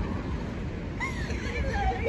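Low rumble of city street traffic, with short wavering vocal sounds from about a second in that lead into a man's laugh near the end.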